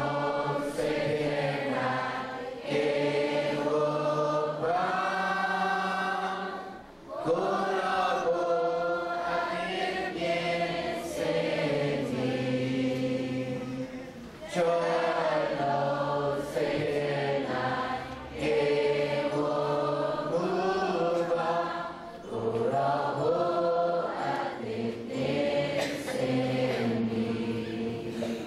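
A hymn sung in long held phrases, a man's voice on the microphone leading and the congregation's voices joining in.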